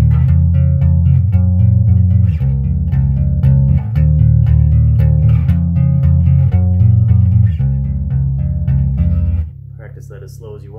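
Bass guitar played in a fast stream of alternating thumb-and-index plucks, repeating each note rapidly and moving to a new position every couple of seconds. The playing stops about nine and a half seconds in, leaving a low steady hum.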